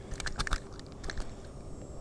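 Several light clicks and crackles of hands handling a crappie that hangs on the fishing line, mostly in the first second, then a faint steady hiss.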